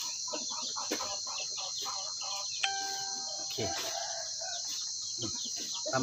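Chickens clucking in short, repeated calls, with one long, steady call a little past the middle, over a constant high-pitched buzz of insects.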